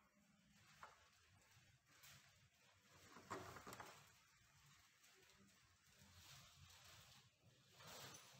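Near silence with a few faint clicks and knocks, the clearest about three seconds in, as a bike saddle's clamp is handled and fitted onto its metal seat post.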